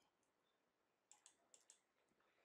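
Near silence, with four faint short clicks in the second half.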